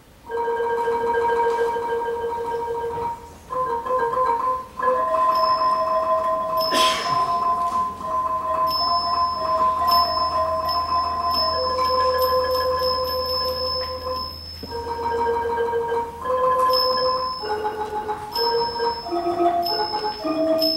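Thai classical ensemble music starting suddenly: ranat xylophones play a slow melody in rolled notes, and from about nine seconds in the ching small cymbals ring on a steady beat.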